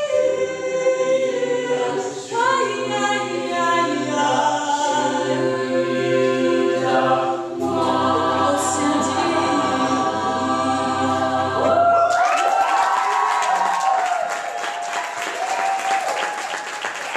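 College a cappella group singing, a solo voice over sustained vocal backing harmonies and a low sung bass line. About twelve seconds in the singing ends and the audience breaks into applause.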